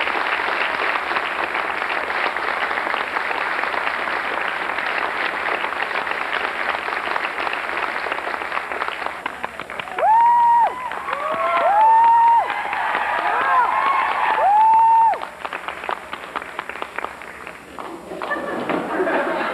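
Audience applauding, with several long, high whoops of cheering rising over the clapping about ten seconds in; the applause then dies down.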